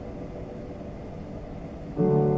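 Piano notes dying away into a low, steady room rumble during a pause between chords, with a loud new chord struck right at the end.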